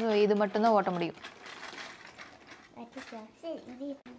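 A sing-song voice for about the first second, then the faint whirring of a battery-powered toy train's small motor and gears running on its plastic track.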